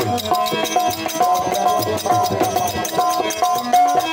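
Live Rajasthani devotional folk music: a harmonium holding and moving between sustained reedy notes over steady dholak drumming, with rattling, jingling hand percussion keeping the beat.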